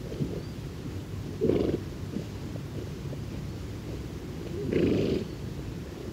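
New Forest ponies snorting twice, a short snort about a second and a half in and a longer one near the end, over a steady low background.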